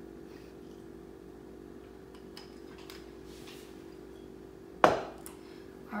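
Quiet kitchen handling under a steady low hum, then a single sharp knock near the end as something hard is set down or fitted on the counter.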